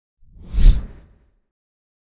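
A single logo-reveal whoosh sound effect with a deep low hit underneath. It swells in, peaks a little over half a second in, and fades out within about a second.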